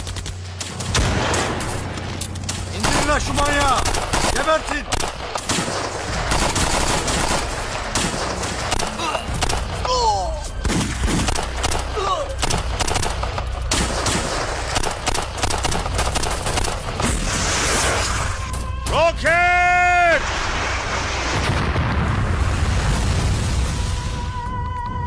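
Heavy gunfire from automatic rifles and machine guns: rapid bursts and single shots with hardly a break, over a dramatised firefight. Men shout now and then, with one long yell about nineteen seconds in, and an explosion rumbles near the end.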